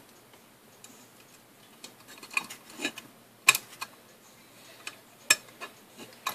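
Small sharp clicks and taps of a plastic LED controller box and a wire lead being handled as the lead is pushed into the controller's screw terminal. The ticks come irregularly, the loudest about three and a half seconds in.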